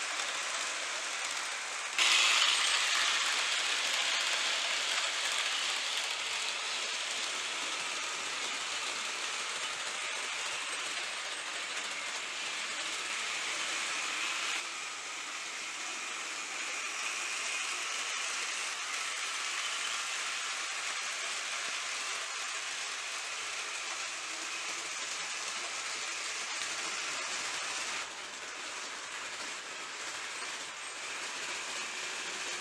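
Rivarossi model steam locomotive and passenger coaches running on model railway track: a steady whirring rattle of the motor and wheels. It gets louder about two seconds in and drops back in steps later on.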